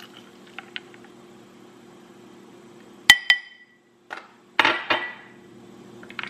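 Glass clinking against glass: two sharp, ringing clinks about three seconds in as a drinking glass knocks against a glass mason jar of milk and ice while an espresso shot is poured. A few short, noisy rattles follow about a second later.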